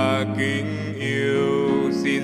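Worship song: a solo singer's held, bending sung notes over piano accompaniment.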